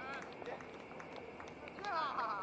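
Faint distant shouts of cricket players calling out on the field: a short call at the start and another near the end, over steady open-air background noise with a few light clicks.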